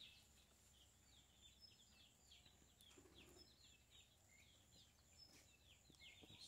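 Near silence with faint, high-pitched bird chirping: a steady run of many short, quick calls.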